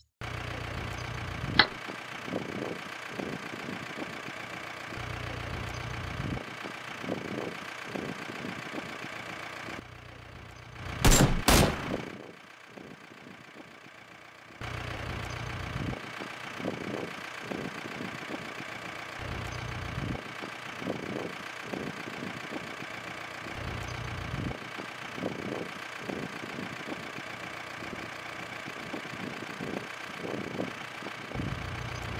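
A vehicle engine idling steadily, with a sharp click about a second and a half in and one brief loud burst about eleven seconds in.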